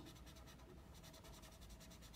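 Felt-tip marker scribbling on paper in rapid, faint back-and-forth strokes as a letter is coloured in.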